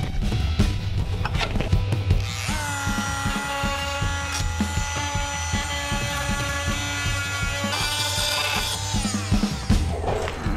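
Handheld electric rotary tool spinning up about two and a half seconds in, running at a steady high whine while it grinds down the fiberglass reinforcement sticking up above a flap rib, then winding down near the end.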